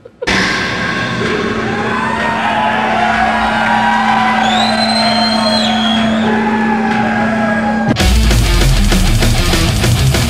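Technical death metal band playing: distorted guitars hold a long ringing chord over a steady low note, with high gliding tones in the middle. About eight seconds in, the full band comes in with fast, dense drumming.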